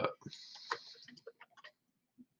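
A few faint, scattered clicks from a computer mouse and keyboard, with a soft hiss in the first second.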